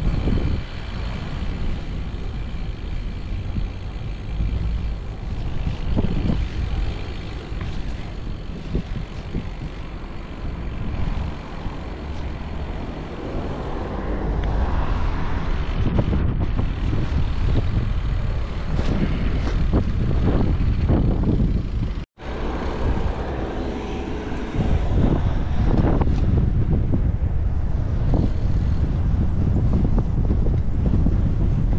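Road traffic passing, heard from a bicycle riding through city streets, with wind rumbling on the action camera's microphone. It gets louder about halfway through, and the sound drops out for a split second about two-thirds of the way in.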